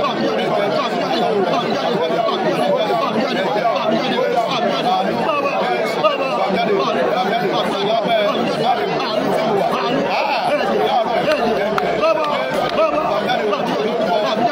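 Continuous speech: praying aloud without pause, in a hall.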